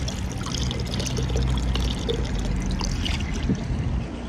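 Steady low rumble of wind and handling on a phone microphone held close while a person drinks, with a few small clicks.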